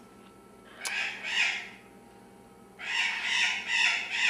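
Harsh bird squawks in two bouts, one about a second in and a longer one starting near three seconds.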